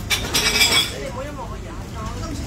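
Busy restaurant background: other diners' voices chattering over a steady low hum, with a brief clatter about half a second in.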